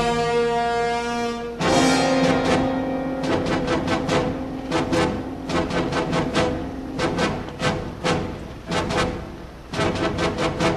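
Dramatic orchestral score: a held brass chord, then a low sustained note under quick, uneven timpani and drum strikes.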